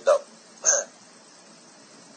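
A man's voice finishes a word, then about half a second later comes one short, sharp breathy vocal sound, like a quick catch of breath. After that there is only a low steady hiss on the line.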